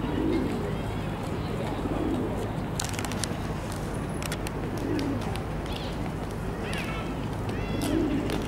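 Feral pigeons cooing: soft low coos recurring every two to three seconds over a steady low background rumble. Sharp clicks are scattered through the middle, and a higher chirping comes in briefly near the end.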